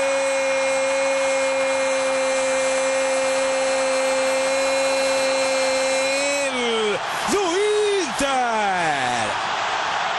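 Spanish-language football commentator's long goal cry, "gol", held on one steady pitch for about six seconds over stadium crowd noise, then dropping in pitch, followed by a couple of shorter cries that slide downward.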